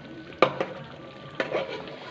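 Spatula stirring thick, simmering mutton korma gravy in an aluminium pan, over a steady low sizzle, with two sharp taps of the spatula against the pan about half a second and a second and a half in.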